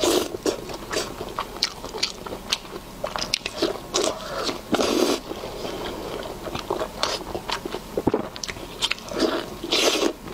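Close-miked eating: bites and wet chewing of food coated in chili oil, with many sharp mouth clicks. Louder bites come about four to five seconds in and again near the end.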